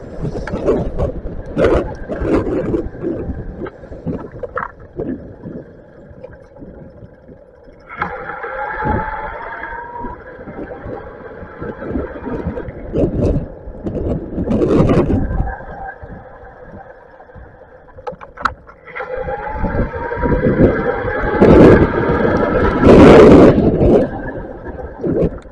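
Bafang BBSHD mid-drive e-bike motor whining under power, rising in pitch as it pulls, about eight seconds in and again from about nineteen seconds. Under it, an uneven rumble of wind and road knocks from riding over wet pavement, loudest near the end.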